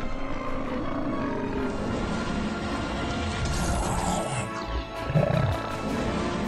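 Background music with a monster-style roar sound effect mixed in, given as the Pop It dinosaur's roar.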